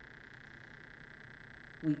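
A pause in the spoken prayers: faint steady background hum and hiss. A voice starts speaking near the end.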